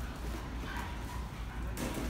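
A dog whining faintly over a steady low hum of street noise, with one sharp, short sound near the end.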